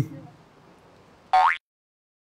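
A man's brief 'mm', then about a second and a half in a short cartoon-style sound effect: a quick upward pitch glide lasting about a quarter second, which cuts off abruptly.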